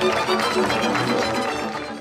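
Slovácko folk band playing verbuňk dance music: violins with cimbalom. The music fades out toward the end.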